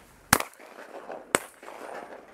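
Two shotgun shots about a second apart, each a sharp crack with a short echo, fired at clay targets on a trap range.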